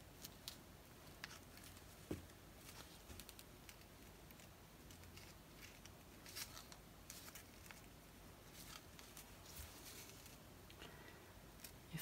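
Near silence: room tone with faint scattered clicks and rustles of handling, as a nitrile-gloved hand brings in a flat metal scraper.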